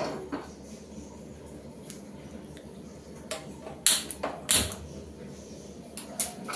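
An aluminium pressure cooker is set down on a gas stove's burner grate with a knock. A few seconds later comes a cluster of sharp clicks, typical of a hand-held spark gas lighter being struck to light the burner.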